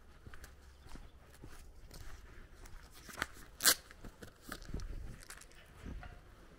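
Footsteps crunching on a gravel and dirt lane, irregular and fairly quiet, with one sharp click a little past halfway that is the loudest sound.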